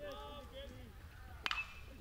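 A baseball struck by a metal bat: one sharp crack about one and a half seconds in, with a brief ringing ping after it.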